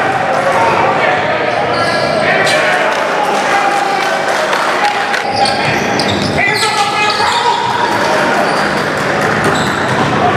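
Basketball dribbled on a gym floor amid live game sound: repeated ball bounces and the voices of players and spectators calling out, echoing in a large hall.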